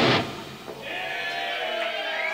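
A heavy metal song stops abruptly, its last chord dying away within about half a second. A few audience members then whoop and cheer.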